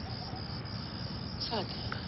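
Crickets chirping steadily in the background, with a brief faint vocal sound about one and a half seconds in.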